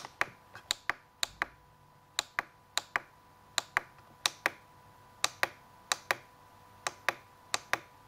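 Button clicks from the page keys of a RadioMaster TX16S transmitter being pressed again and again to step through menu pages. About twenty sharp clicks come at uneven intervals, many in quick press-and-release pairs.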